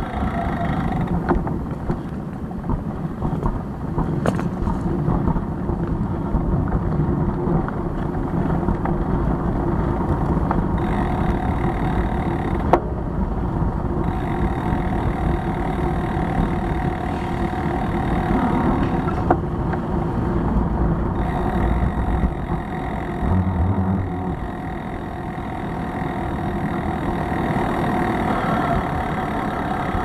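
Steady rumble of road and wind noise picked up by a handlebar-mounted Cycliq bike camera on a moving bicycle, with city traffic around it. A single sharp knock comes about halfway through.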